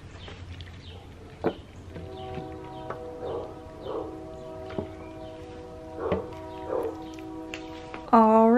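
Soft background music with held, sustained chords and a few swelling notes. A sharp tap sounds about a second and a half in.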